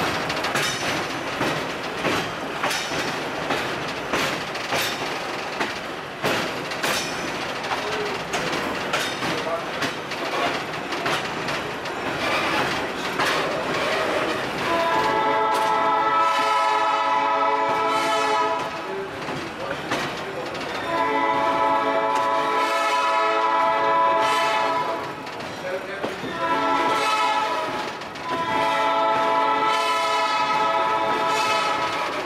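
Train rolling through the yard with wheels clicking over rail joints, then the Baldwin RS-4-TC diesel locomotive's multi-tone air horn sounds two long blasts, a short one and a long one, the pattern for a grade crossing.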